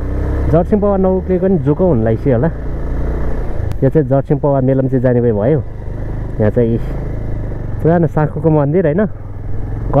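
A person talking in several bursts over the steady low running of a motorcycle engine while riding.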